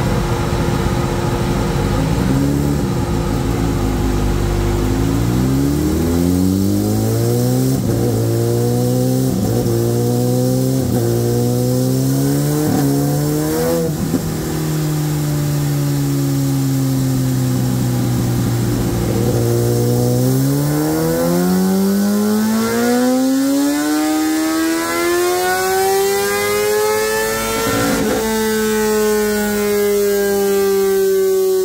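2017 Kawasaki ZX-10RR's inline-four with an Akrapovic slip-on exhaust, running on a chassis dyno. It idles, then the revs climb in about five short steps, each ending in a drop as it is shifted up through the gears. After holding for a few seconds, the revs rise in one long smooth sweep under full throttle, then break near the end and slowly fall away as the throttle closes.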